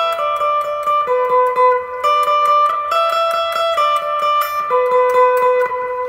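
Electric guitar playing a single-note lead fill in the E minor pentatonic scale high on the neck, around the 10th to 12th frets: a quick, steady run of picked notes, each ringing into the next.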